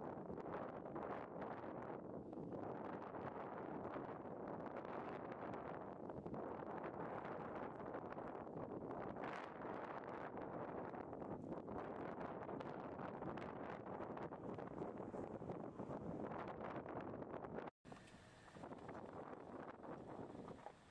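Wind buffeting the camera microphone: a steady, rough noise that cuts out briefly near the end and comes back quieter.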